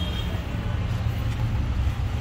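Steady low vehicle rumble.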